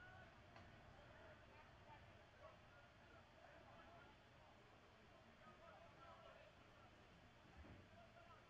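Near silence: faint ballpark ambience with distant, indistinct voices.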